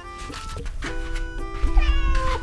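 A domestic cat meowing once near the end, a call that falls in pitch, over light background music, with some low thudding at the same moment.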